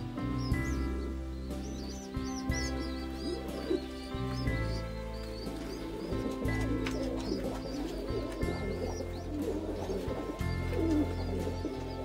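Pigeon squabs peeping in quick, high squeaky chirps while being fed by their mother, over soft background music. The peeping is densest in the first half.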